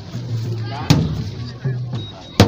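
Large ceremonial drums being beaten for a dance. One heavy, sharp stroke comes about a second in, with lower booming drum tones sounding before and after it.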